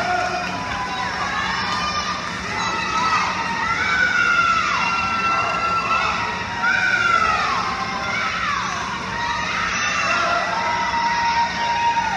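Swim-meet crowd and teammates shouting and cheering on swimmers during a race, many overlapping long yells that rise and fall, in a large indoor pool hall.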